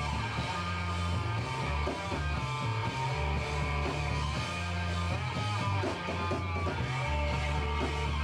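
Noise-rock band playing live: loud distorted electric guitar over a heavy low riff that moves between held notes.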